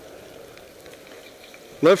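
Steady hiss of skis sliding over snow on a downhill run. A man's voice starts speaking near the end.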